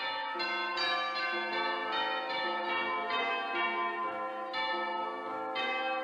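Bells ringing a continuous run of strikes, about two a second, each note ringing on under the next.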